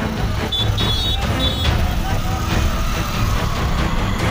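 A vehicle engine runs with a steady low rumble under indistinct voices. A few short high beeps sound in the first second and a half.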